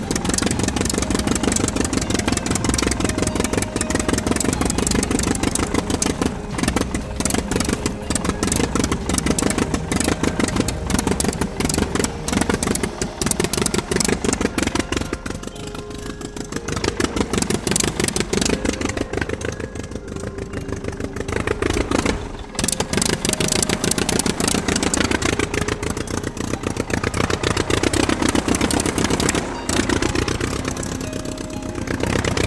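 A small engine on a homemade model locomotive running with a fast clattering beat, its speed rising and falling, with a short break about two-thirds of the way through.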